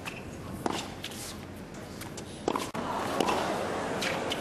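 Tennis rally on a hard court: a few sharp racket strikes of the ball and scuffing shoes, over the low, steady hush of an arena crowd.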